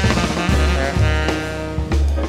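Jazz band playing: a saxophone holds notes over drum kit and low bass notes.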